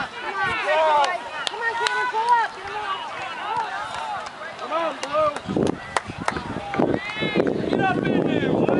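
Spectators chattering on the sideline of a youth soccer match, several voices overlapping with no clear words, and a few sharp clicks. Low rumbling bursts come in after about five and a half seconds.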